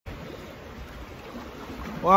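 Steady sea noise of water washing around the rocks, with a low wind rumble on the microphone.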